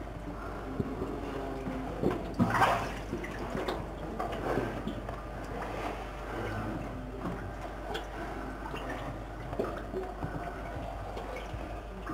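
Water sloshing and splashing as people wade through waist-deep water in a flooded brick tunnel, in irregular surges, the loudest about two and a half seconds in.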